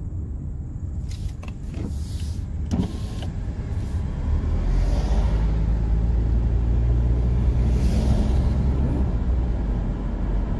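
Car interior noise while driving: a steady low drone of engine and tyres, with a few light knocks in the first three seconds, growing louder about four and a half seconds in as the car gathers speed.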